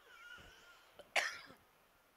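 A single short cough about a second in, with faint distant voices just before it.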